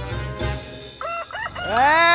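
A rooster crowing: a few short notes about a second in, then one long crow that rises and falls, starting near the end.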